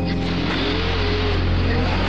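A large vehicle, a bus or truck, driving past on a city street: engine and tyre noise rising and then easing off, with music playing softly underneath.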